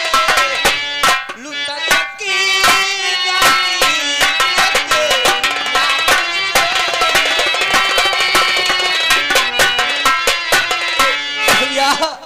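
Live folk theatre music: a man sings into a microphone over sustained harmonium-like tones and fast hand-drum strokes. The music stops right at the end.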